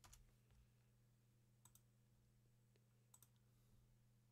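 Near silence with a few faint computer clicks, mouse or keyboard, two of them in quick pairs, over a faint steady low hum.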